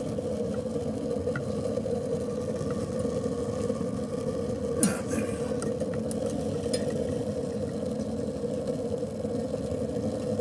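Wood-pellet rocket stove boiler running hot, a steady droning hum throughout. A sharp click comes about five seconds in, with a few fainter ticks after it.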